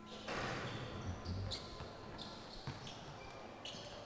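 Basketballs bouncing on a gym court with voices chattering in the background; the sound gets louder a moment after the start.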